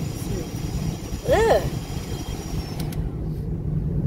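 Steady low rumble of a Toyota Camry heard from inside the cabin while driving. This is the drone the driver, moments later, believes is a worn wheel bearing. A faint high whine stops about three seconds in.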